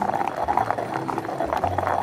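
Stone pestle pounding and grinding a wet pepper paste in a stone mortar: many quick, irregular strikes and rubs, with background music underneath.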